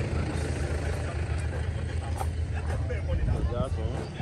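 An engine running steadily with a low, even rumble, with faint voices talking in the background.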